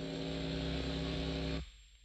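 Steady electrical hum with many overtones on an old demo tape recording; it cuts off suddenly about a second and a half in.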